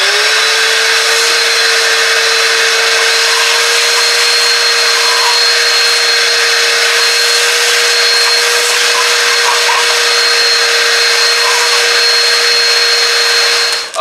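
Large wet/dry shop vacuum running loud and steady, its motor just reaching full speed at the start, with a high whine over the rush of air as it sucks debris off the floor. It is switched off just before the end.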